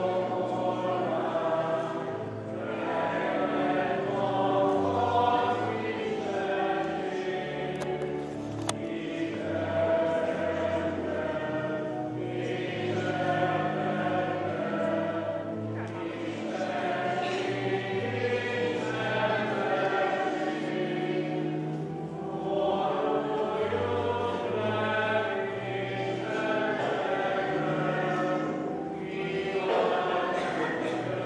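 A choir singing a hymn in phrases a few seconds long, with short breaks between them.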